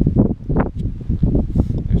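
Wind buffeting the microphone of a handheld camera, a loud, gusty low rumble that surges and drops irregularly.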